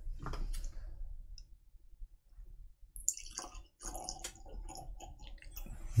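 Faint clicks and light knocks of a small glass sample bottle and tasting glasses being handled on a table, a little more busy in the second half.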